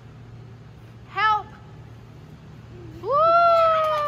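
A child's high-pitched voice: a short squeal about a second in, then a long drawn-out call from about three seconds in that rises, holds and slowly falls.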